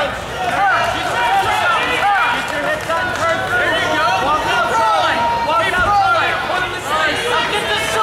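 A crowd of fight spectators and cornermen shouting and yelling over one another, many voices at once with no single voice standing out.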